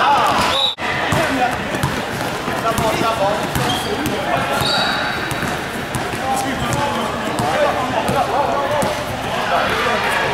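A basketball bouncing on a hardwood gym floor amid the overlapping shouts and chatter of players and spectators, in a large echoing hall, with a few brief high squeaks. The sound cuts out for an instant just under a second in.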